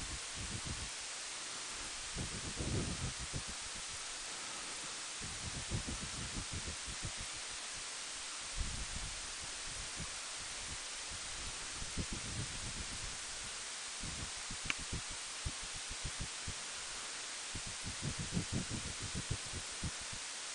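Steady hiss of wind and microphone noise on a slow-moving motorcycle, broken by irregular low buffets of wind on the microphone every second or two.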